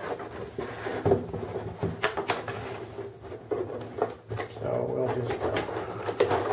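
Cardboard laptop box being handled: scrapes and rustles of the cardboard with a few sharp knocks spread through.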